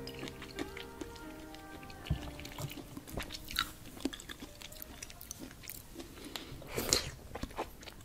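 A metal fork tossing and lifting dressed sweet potato leaves on a plate: scattered clicks of the fork against the plate and wet crunching of the greens, with a louder cluster about seven seconds in. Background music with held tones fades out during the first two seconds.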